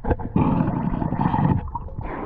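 A diver's breath underwater: a rush of exhaled bubbles lasting just over a second, starting about half a second in, with weaker irregular bubbling and water noise around it.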